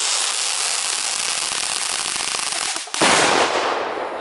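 Ground-flower firework spraying sparks with a loud, steady hiss. The hiss dips briefly near the three-second mark, then comes back louder and fades toward the end.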